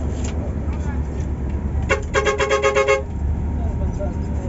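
Steady low rumble of a coach's engine heard from inside the cabin. About two seconds in, a loud two-tone horn sounds a fast stuttering toot of roughly ten pulses in a second, lasting about a second.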